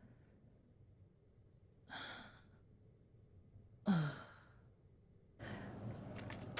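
A person sighs: a quiet breathy exhale about two seconds in, then a sighed "oh" falling in pitch about two seconds later. Soft breathy noise starts near the end.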